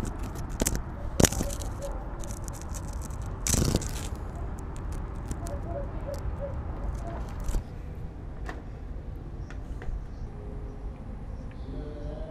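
Handling noise on a small camera at ground level: scrapes, clicks and knocks as something touches and shifts it, over a steady wind rumble on the microphone. A sharp knock comes about a second in and a louder scrape about three and a half seconds in.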